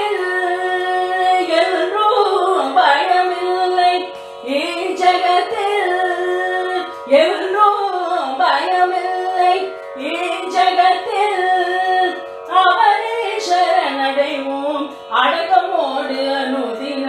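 A solo voice singing a devotional song in Carnatic style, the notes sliding and ornamented, in phrases separated by short breaths, over a steady drone.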